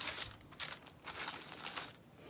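Soft, irregular paper rustling and crinkling, a string of short scrapes and crackles as book pages are handled and turned.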